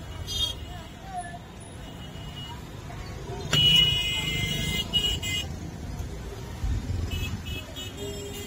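Busy street traffic noise with a vehicle horn honking: one long, high-pitched blast about three and a half seconds in, then short toots, and a few more brief toots near the end.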